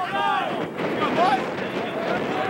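Several voices shouting calls during a rugby match, over a steady rush of wind on the microphone.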